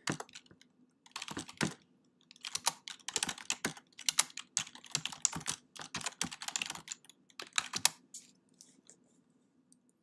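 Typing on a computer keyboard: quick runs of keystrokes with short pauses between them, stopping about eight seconds in.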